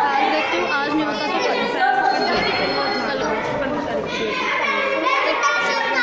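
Chatter of many children talking at once, overlapping voices in a large hall.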